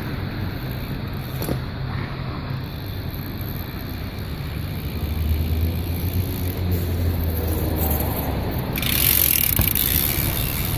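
BMX bike tyres rolling on smooth concrete, a steady hiss that grows loud near the end as the bike passes close by. Under it runs a steady low rumble.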